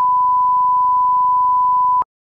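Television test-card tone: one steady pure sine tone at a constant pitch that cuts off abruptly at the very end.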